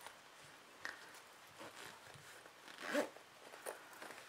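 Faint handling noise of a fabric zipper clutch being turned in the hands: rustling cloth and the zipper, with one louder short sound about three seconds in.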